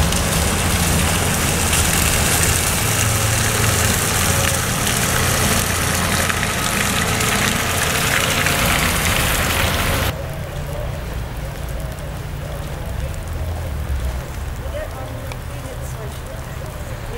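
Outdoor street ambience on a wet, slushy road: a loud, steady hiss of traffic with a low rumble of wind on the microphone. About ten seconds in it drops abruptly to a quieter background in which faint voices can be heard.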